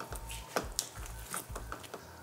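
Wooden spoon stirring thick tomato sauce in a stainless steel pan, with a few light, irregular knocks and scrapes of the spoon against the pan.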